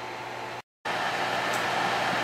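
Steady hiss of an Elmo 35-FT(A) filmstrip projector's cooling fan running. It drops out for a moment a little over half a second in and comes back louder.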